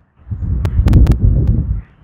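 Wind buffeting the microphone: a loud, low rumble for about a second and a half, with a few sharp clicks in its middle.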